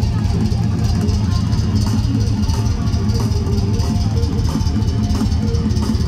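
A hardcore metal band playing live through a concert PA: distorted electric guitars, bass and drums, loud and dense.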